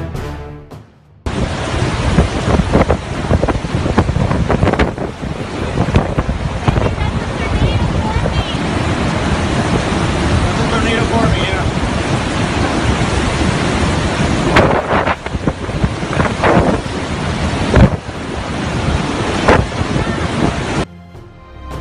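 Hurricane-force wind and driving rain blowing hard, with gusts buffeting the phone's microphone. A short music jingle ends abruptly about a second in, when the storm noise starts.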